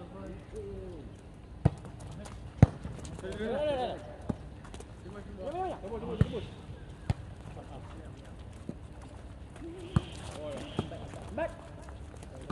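A volleyball being struck: about seven sharp slaps of hands on the ball spread across the rally, the loudest about two and a half seconds in. Players shout calls between the hits.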